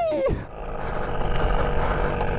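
Small engine of a children's mini motorcycle running steadily as it rides along, opening with a short squeal of the rider's voice that falls in pitch.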